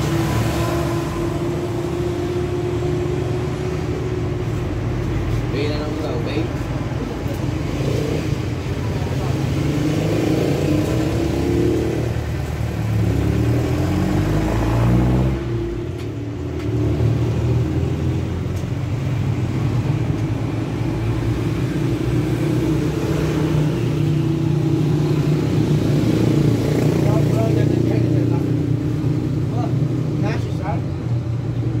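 A motor vehicle engine running steadily nearby, its pitch falling and rising again about twelve to fifteen seconds in, with voices over it.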